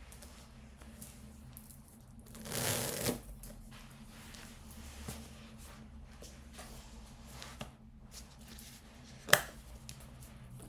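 Leather and fabric rustling as a quilted leather shoulder bag is shifted on the body, loudest about two and a half seconds in. Near the end comes one sharp click as the bag's flap closure is pulled open. A low steady hum runs underneath.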